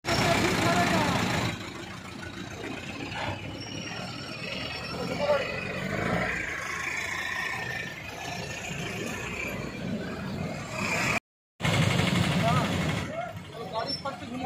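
Street traffic sound: car and motorbike engines running and passing close by, with people talking over it. The sound cuts out for a moment about eleven seconds in.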